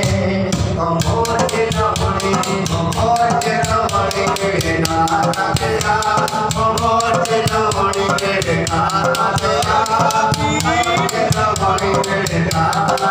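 A man singing a Sufi devotional kalam in a bending, melismatic voice, backed by a hand drum and a dense, steady rattling percussion beat.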